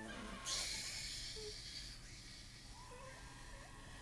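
A person's short, noisy breath out about half a second in, lasting a second or so, then a quiet room with a faint hum of voice near the end.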